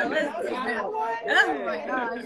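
Several voices talking over one another at once, indistinct chatter with no single clear speaker.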